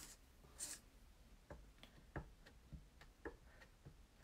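Clear acrylic stamp block tapped repeatedly on a Memento ink pad to re-ink a rubber stamp: faint, light taps about three a second, after a short soft hiss near the start.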